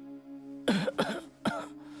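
A young man's voice coughing three times in quick succession, starting a little over half a second in: the rough coughs of someone sick with a fever. A steady held music note runs underneath.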